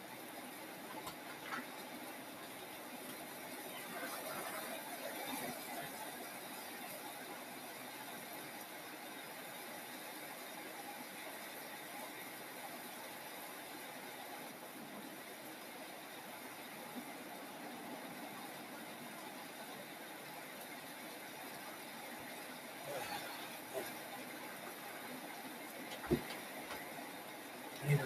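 Quiet room noise, a faint steady hiss, with a few soft handling sounds scattered through it and a single sharper knock near the end.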